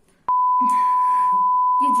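A loud electronic beep tone at one steady pitch. It switches on abruptly about a quarter second in and holds unbroken, with women's voices faint beneath it.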